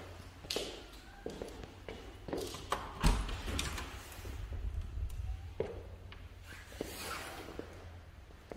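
A panel door being opened by its knob: scattered clicks and knocks with footsteps, and a heavy thump about three seconds in that is the loudest sound.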